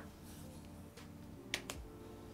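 Light clicks of a plastic utensil against a clear plastic clamshell cake container, one at the start and two close together about a second and a half in.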